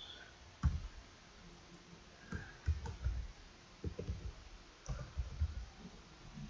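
Computer keyboard typing and clicking in four short clusters with pauses between, the keystrokes carrying as soft low thumps.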